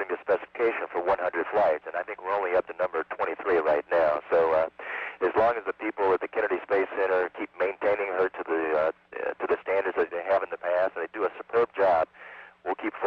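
A man speaking without pause over a space-to-ground radio link, the voice thin and telephone-like, with a faint steady hum beneath it.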